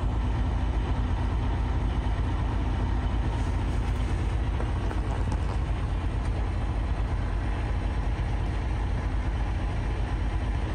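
A 2020 Freightliner Cascadia's diesel engine running steadily, heard from inside the cab as an even, unbroken low rumble.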